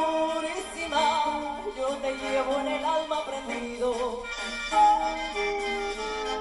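A Colombian porro band plays an instrumental passage of a porro tapao: brass melody lines over a bass drum.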